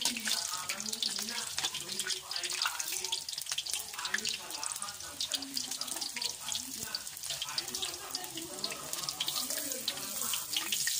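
Ngohiong rolls deep-frying in hot oil in a wok: a steady sizzle thick with fine crackling and popping, stirred now and then by a metal utensil.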